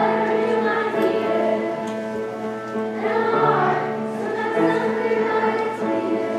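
Children's school choir singing, with long held notes.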